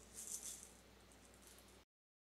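A few faint maraca shakes trailing off after the music has ended, then the sound cuts off to dead silence shortly before the end.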